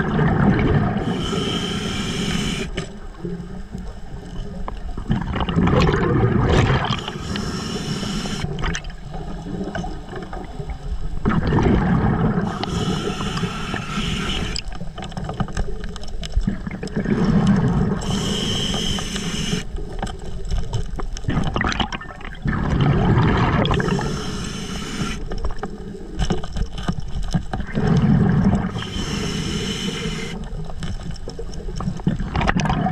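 A diver's scuba regulator underwater, breathing in a steady cycle about every five to six seconds: a low bubbling rush of exhaled bubbles, then a short hissing inhale with a faint whistle, about six breaths in all.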